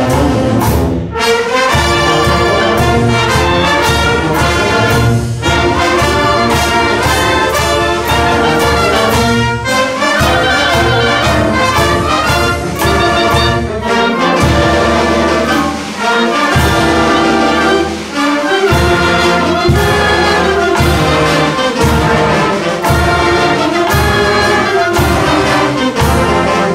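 A school wind band playing a piece together, with flutes, clarinets and saxophones over trumpets, trombones and sousaphones, to a steady beat.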